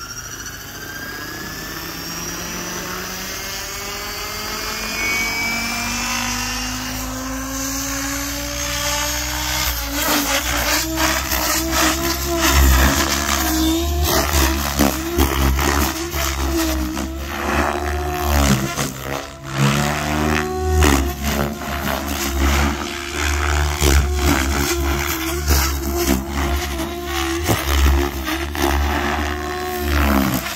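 XLPower Specter NME electric RC helicopter, its EgoDrift motor and rotor whine rising steadily in pitch for about the first ten seconds. After that the rotor sound is loud and uneven, surging and dipping as the helicopter is flown.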